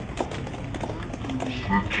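Background hubbub with scattered small knocks, then a man's voice starting over a microphone near the end.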